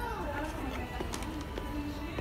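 Background music with a singing voice playing through the store, with a steady low hum and scattered light clicks underneath.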